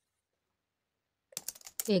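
Silence for over a second, then a quick run of computer-keyboard typing clicks from a typing sound effect as an on-screen caption appears. A woman's voice begins right at the end.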